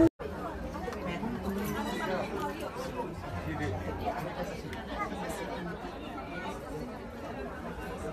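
Indistinct chatter of a group of people talking at once, steady and fairly quiet, with no single clear voice.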